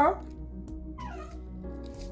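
A mini Australian shepherd's short high whine, falling in pitch, about a second in, over steady background music.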